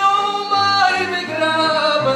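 A man singing with piano accordion accompaniment: a long held note, then the melody steps down in pitch about a second in, over the accordion's bass notes.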